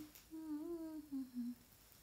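A woman humming with her mouth closed, a short 'mm-mm-mm' phrase that steps down in pitch over about a second.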